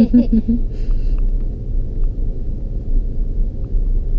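Cabin rumble of a Land Rover Discovery 3 driving on beach sand: a steady low drone of engine and tyres. A voice trails off in the first half-second.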